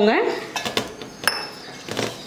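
A stainless-steel tumbler and mixing bowl clinking against each other three times as water is added to murukku flour, with the rub of hands mixing the flour between the clinks.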